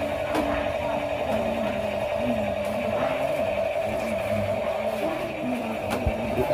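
Ritual prayer chanting: a voice intoning in a slow, wavering pitch over a steady high hum.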